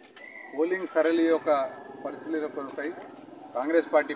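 A man's voice speaking Telugu into a close microphone, two short phrases with a pause between them.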